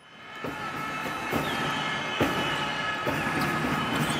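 Basketball gym ambience fading in: balls bouncing on the court about once a second, a short high squeak or two, and a steady high hum underneath.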